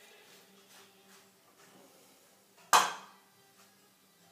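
One sharp clack of a kitchen knife against wood or the avocado about two-thirds of the way through, over quiet kitchen room tone with a faint steady hum.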